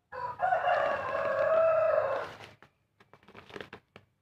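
A rooster crowing once, one long call of about two seconds, followed by soft rustling and clicks of hands working soil in plastic polybags.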